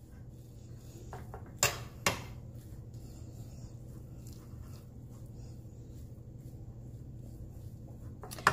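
Metal fork scraping through cooked rice in a skillet, with two sharp clinks of the fork against the pan about half a second apart, about a second and a half in. A steady low hum runs underneath.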